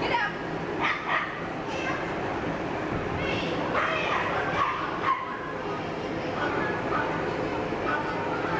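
A dog barking and yipping, short sharp calls repeated several times over a steady background of voices.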